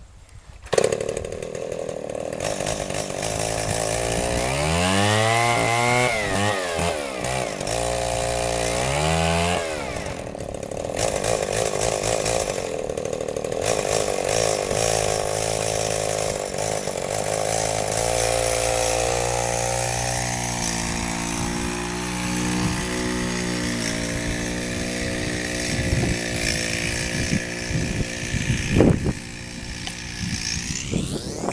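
A McCulloch Pro Mac 610 two-stroke chainsaw engine, fitted to a bicycle as a friction drive, bursts into life about a second in. It is revved up and back down twice, then keeps running with a wandering pitch.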